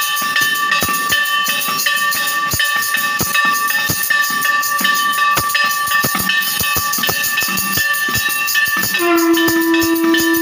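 Temple aarti music: fast, irregular drum beats and clanging under a steady ringing of bells. About nine seconds in, a conch shell joins with a long, steady note.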